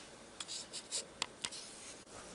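About half a dozen short, sharp clicks and scratchy ticks packed into about a second, from a covered ceramic pot of soup boiling on the hob.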